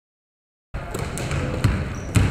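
A moment of silence, then basketball practice sound cuts in suddenly: several basketballs bouncing on a hardwood gym floor amid sneaker footsteps, with a short sneaker squeak near the end.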